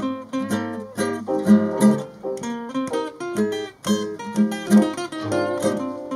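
Live acoustic jam: a nylon-string classical guitar and a steel-string acoustic guitar strummed and picked in rhythm, with an electronic keyboard playing along.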